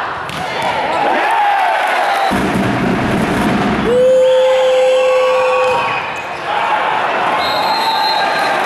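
Volleyball arena crowd shouting and chanting. About four seconds in, a single steady horn-like note is held for nearly two seconds over the crowd.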